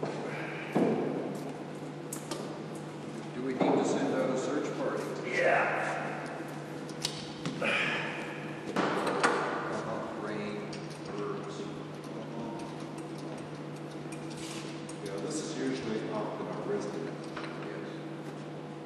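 Indistinct voices of workers talking in a large hall, in bursts, over a steady low hum, with a few sharp knocks.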